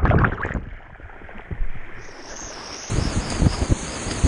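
Whitewater kayak going under in a rapid: a loud splash, then about two seconds of muffled underwater rushing while the camera is submerged. About three seconds in, the full roar of the rapid comes back as the boat resurfaces.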